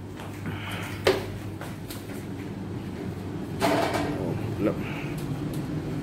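A steady low machine hum, with a sharp click about a second in and a louder knock or rattle at about three and a half seconds.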